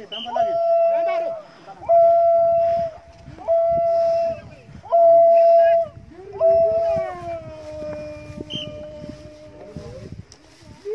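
Drawn-out, high held war cries from Papuan tribesmen: four calls of about a second each on one steady pitch, then a longer cry that slides down and is joined by a lower voice holding its own note.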